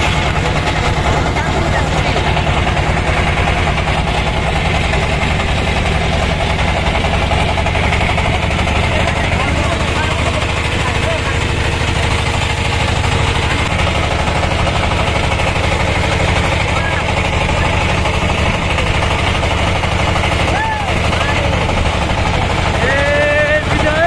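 Wooden river boat's engine running steadily, a loud, fast, even pulsing that does not let up.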